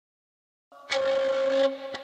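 Silence, then a breathy flute note starts under a second in, is held for most of a second and then drops away as the melody begins.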